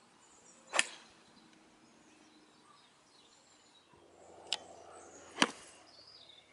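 Two golf iron shots struck off a driving-range mat, each a single sharp crack of clubface on ball. The first (5-iron) comes about a second in. The second (wedge) comes near the end, with a lighter click shortly before it.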